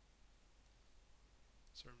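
Near silence: room tone with a faint steady low hum, then a man's voice starts speaking near the end.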